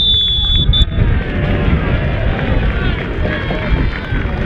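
Referee's whistle: one long blast followed by a short pip, which marks full time. Spectators' voices and chatter follow.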